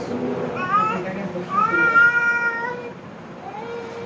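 A baby fussing with two high whining cries: a short rising one just before a second in, then a longer held one around two seconds in.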